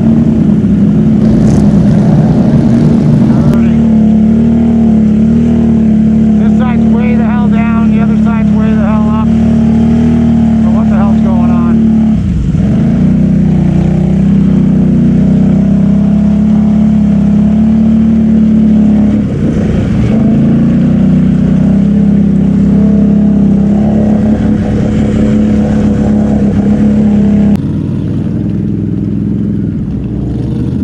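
ATV engine running steadily under load while churning through deep water and mud, with the throttle let off briefly twice. It turns quieter near the end.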